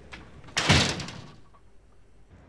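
A door being shut: one loud bang about half a second in that dies away over about a second.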